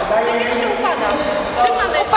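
Speech: people talking in a gym, with no other distinct sound.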